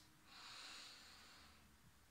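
A woman's slow, deep breath: a faint, soft rush of air lasting about a second and a half, fading out.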